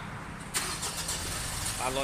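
A Mitsubishi Pajero Sport's engine being started: it catches suddenly about half a second in and settles into a steady idle.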